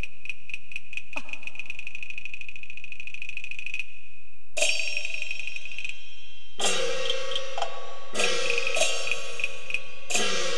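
Chinese opera percussion. A run of quick strikes speeds up into a fast roll over the first four seconds and stops. A cymbal crash follows about halfway through, and near the end come more strikes with pitched instrument notes.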